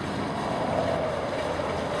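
Waste cooking oil poured slowly through a funnel into a plastic fuel can, a faint steady trickle under an even background rumble.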